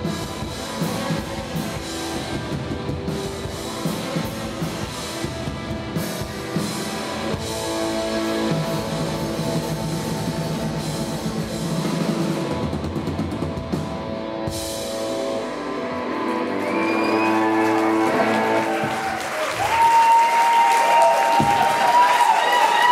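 A live rock band with electric guitars and a drum kit plays the close of a song. About three quarters of the way through the drums stop and the guitars ring on. Near the end applause from the audience swells over the last notes.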